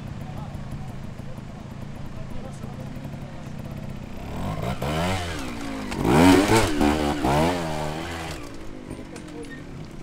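Trials motorcycle engine running at a low idle, then blipped several times so that its pitch rises and falls in short revs, loudest in the middle, before dropping back to idle.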